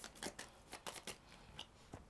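Paper playing cards being shuffled by hand: a run of faint, quick, irregular clicks and flicks.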